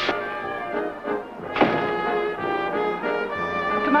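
Brass-led band music playing held chords, with a new chord coming in about one and a half seconds in.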